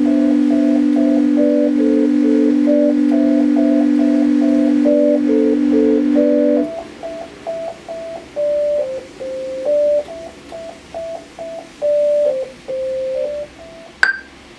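Yamaha electronic keyboard playing a slow, simple melody of short notes over a held low note. About halfway through the low note stops and the melody carries on alone, sparser, with gaps between notes.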